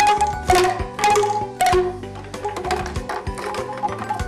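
Traditional Javanese lengger tapeng ensemble music: bamboo angklung notes struck in a quick run with hand percussion, the notes ringing briefly. Louder in the first two seconds, then softer.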